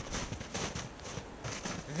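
Quiet, uneven footsteps crunching in snow.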